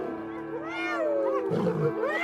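Male lion growling as it charges from its kill at the hyenas: a loud, harsh burst in the last half second. It is preceded by spotted hyenas' cries rising and falling in pitch about half a second to a second in.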